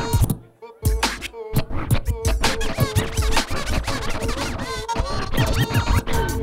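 Hip hop DJ scratching a vinyl record on a turntable over a beat: quick back-and-forth scratch sounds cut into the music. The music drops out briefly about half a second in, then comes back.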